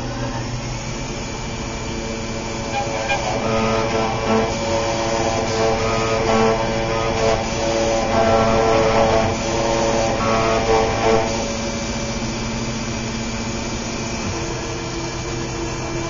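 New Hermes Vanguard 9000 engraving machine running a job: the spindle starts with a steady high whine while the cutter engraves lettering into the plate. A pitched motor hum grows louder and shifts in pitch from about three to eleven seconds in as the machine moves and cuts, then settles back to the steady running sound.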